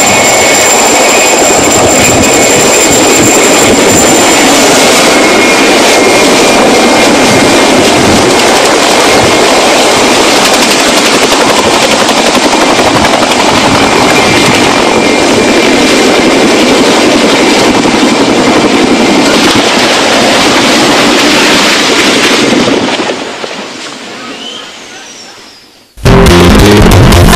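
Helicopter engine and rotor running loudly and steadily, with a thin steady high whine over the noise for much of the time. The sound fades away over the last few seconds.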